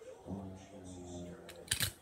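A man's low hum lasting about a second, then two sharp handling clicks near the end, the loudest sounds here.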